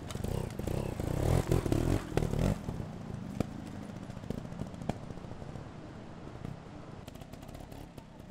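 Trials motorcycle engine revving in bursts for the first two and a half seconds while the bike climbs over rock. It then goes quieter, with a few sharp clicks and knocks.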